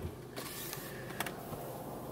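Faint steady hiss inside a car, with soft creaks and a couple of light clicks.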